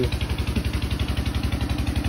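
An engine idling: a steady, rapid, even low pulse.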